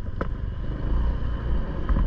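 Steady low rumble of a motorcycle under way: engine and wind noise on the microphone, with a short click just after the start.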